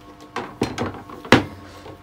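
Motorcycle rear shock absorbers being handled and set down on a table: a few short knocks, the loudest a little past halfway.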